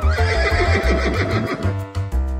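A horse whinnying, about a second and a half long, with a fast quavering pitch that falls away, over cheerful background music with a steady bass beat.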